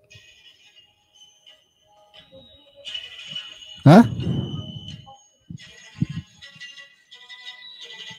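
Faint, garbled voice of a student coming over an online-class audio link, breaking up into warbling, tinny tones. A man's short questioning 'huh?' about four seconds in is the loudest sound.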